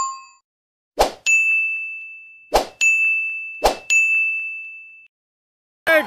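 Subscribe-and-bell animation sound effect: a bell ding fading out at the start, then three sharp clicks about a second apart, each followed by a high, bright ding that rings on for a second or so.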